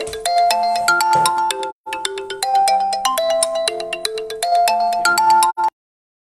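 A phone ringtone playing a melody of held notes, repeating in phrases, that cuts off suddenly near the end.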